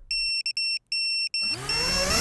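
FPV quadcopter: a high electronic beep sounding in short pulses, then about one and a half seconds in the motors spin up with a loud rising whine while the beeping carries on.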